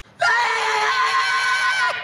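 A person's voice holding one long, high-pitched cry, starting a moment after a brief silence and lasting well over a second.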